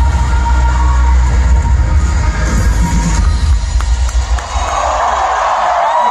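Loud live metalcore band music with heavy bass, heard from within an arena crowd, which stops about four seconds in and gives way to crowd cheering and screaming.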